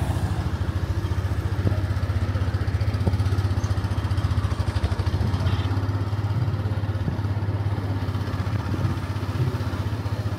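Motorcycle engine running steadily as the bike rides along, heard from the pillion seat: a low hum with a fast, even pulse.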